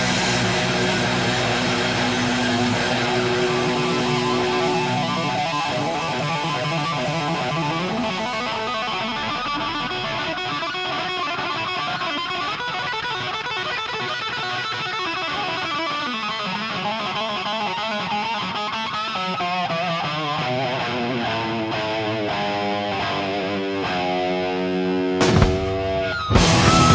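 Distorted electric lead guitar playing an extended live solo in a heavy rock concert. Held notes give way to fast, quavering runs, with the lower accompaniment dropping away after about five seconds, and a short break near the end.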